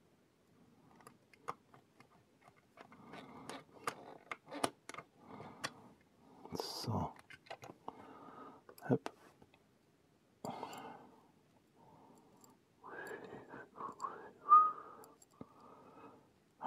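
Small screwdriver and plastic model-kit parts being handled while screws are driven into a dashboard assembly: scattered light clicks and ticks with short rustles of plastic and wires, and a brief squeak near the end.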